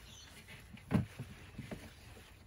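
Close handling noise while picking eggplants: light rustling of leaves and stems, with one sharp knock about a second in and a few softer clicks after it.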